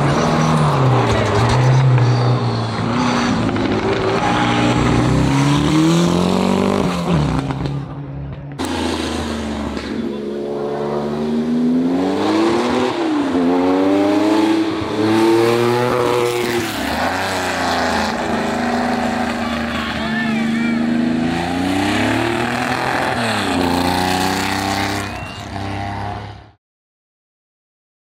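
Hillclimb race cars driven hard past the roadside, their engines revving high and dropping back with each gear change, so the note rises and falls many times. A brief cut about eight seconds in leads to another car's run.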